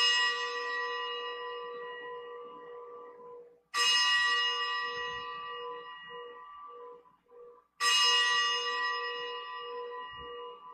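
A bell struck three times, about four seconds apart, each stroke ringing out and slowly fading with a slight waver in its lower tone. It is rung at the elevation of the chalice just after the consecration at Mass.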